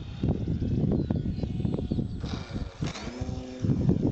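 Wind buffeting the microphone, with the whine of a ParkZone Stinson electric model airplane's motor coming in about halfway through and shifting in pitch as the plane flies by.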